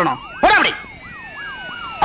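Vehicle siren in a fast up-and-down yelp, about three sweeps a second, with a second, slower tone falling steadily underneath. A short burst of a voice cuts in about half a second in.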